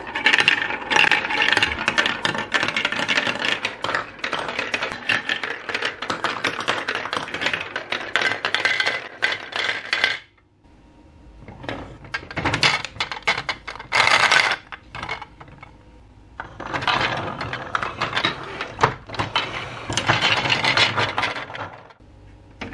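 Plastic balls rolling and clattering down a plastic building-block marble run, a dense run of clicks that lasts about ten seconds. Short rattles follow as balls shift in a toy crane's plastic bucket, then a second long run of clattering comes near the end.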